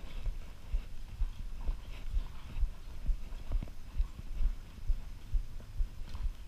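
Horse's hoofbeats on the soft dirt footing of an indoor riding arena: dull, low thumps in a steady rhythm of about two a second, heard from the saddle.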